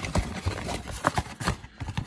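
Hands handling a stack of foil-wrapped trading-card packs and their cardboard box on a tabletop: irregular taps and knocks, a few each second.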